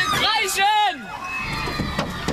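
High-pitched voices shouting with a strongly wavering pitch for about a second, then a quieter mix of voices over a low rumble.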